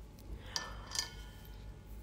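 Two faint light clinks, about half a second and a second in, each leaving a brief thin ring, as small nail-art tools are handled on the tabletop, over a low steady hum.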